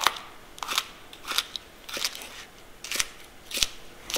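Kitchen knife slicing chicory leaves into thin strips on a cutting board: about six separate cuts, each a sharp knock of the blade on the board, a little under a second apart.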